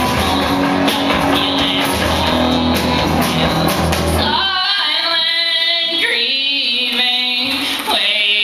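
Live band with drum kit, bass and guitars playing loudly, with steady drum hits. About four seconds in the drums and bass stop, and several voices sing held notes together over the accordion.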